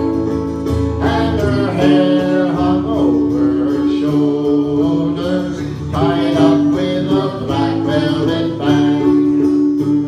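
Live acoustic folk performance: a man singing into a microphone over a strummed acoustic guitar, with long held notes running underneath.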